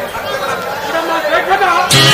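Indistinct speaking voices, with music starting suddenly just before the end.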